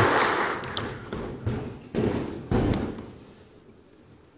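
A few dull thuds and knocks that echo in a large hall and die away to quiet over about three seconds.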